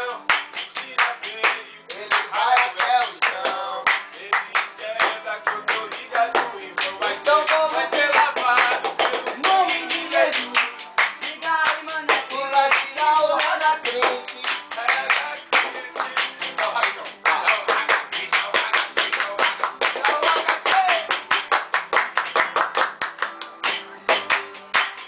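Several young men singing a swingueira (Bahian pagode) tune over fast, rhythmic hand claps and slaps that keep the beat throughout.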